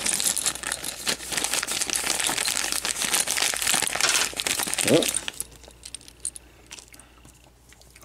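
Thin clear plastic zip-lock bag crinkling as it is opened and handled for about five seconds, with small hard plastic toy parts clicking against each other inside. After that it drops much quieter, with only a few faint clicks as the loose parts are handled.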